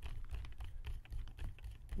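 Hand screwdriver turning a small screw into the metal frame of an Avet JX 6/3 fishing reel, making a run of small, irregular clicks.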